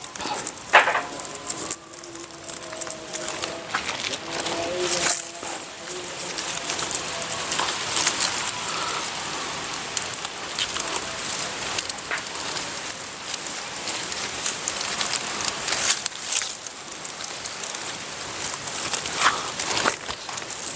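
Durian seedling leaves and dry straw mulch rustling and crackling in irregular small clicks as hands work in the foliage to tie a plastic name tag onto the potted seedling.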